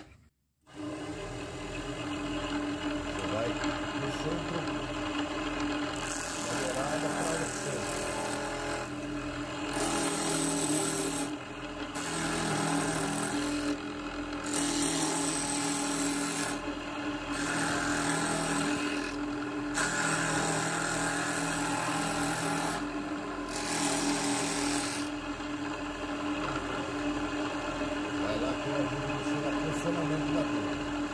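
Wood lathe running with a steady motor hum while a narrow gouge cuts a spinning pen blank on a pen mandrel. The cutting is a rough scrape of wood shavings that starts and stops in about seven passes, from several seconds in until a few seconds before the end.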